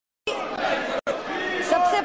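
Many voices talking over one another in a large parliamentary chamber: a chatter of MPs. It starts a moment in and breaks off briefly about a second in.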